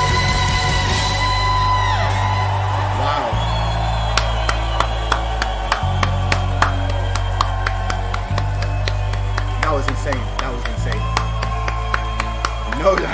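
A live rock band with an orchestra playing: a long sustained note dies away about two seconds in, then slow held bass chords change every couple of seconds, with crowd cheering and whoops. Sharp hand claps come in from about four seconds in.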